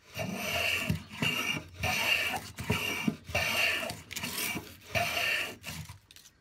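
Record 0311 shoulder plane cutting along the shoulder of a wooden board in about seven quick, rasping strokes, each under a second with short gaps between. The freshly sharpened iron is cutting nicely and raising curly shavings.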